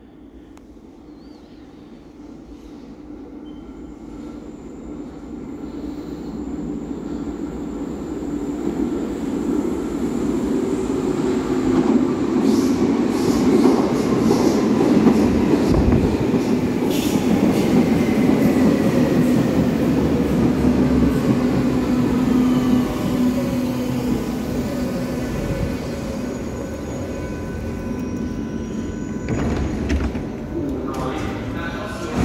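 Berlin U-Bahn train of the H01 series arriving at an underground station. A rumble grows louder over about ten seconds, then comes a falling whine as the train brakes and slows to a stop. Near the end the recorded announcement "Einsteigen bitte" sounds.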